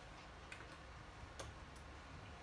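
Faint, irregular clicks of a small plastic toy being handled and knocked against a hard surface, four light taps in two seconds over quiet room tone.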